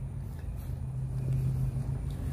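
Steady low hum and rumble of a vehicle moving slowly.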